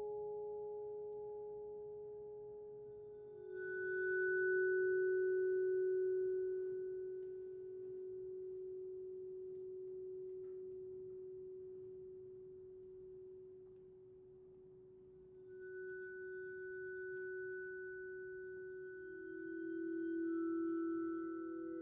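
Bowed vibraphone bars ringing in long, pure sustained tones: a low tone held throughout, with a higher tone swelling in about three seconds in, fading, and returning near the end.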